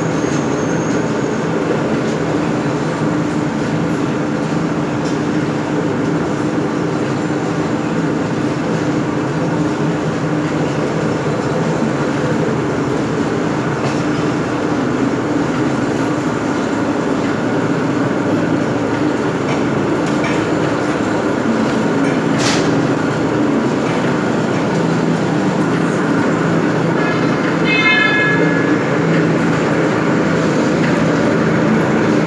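Belt-driven cottonseed oil mill machinery, with electric motors turning V-belts and pulleys that drive an oil expeller, running with a loud, steady drone and hum. A single sharp click about two thirds of the way in, and a brief high whine near the end.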